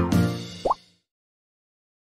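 End of a short keyboard intro jingle: a final chord dies away, a quick upward-sliding pop sound effect sounds just under a second in, and then the sound cuts to silence.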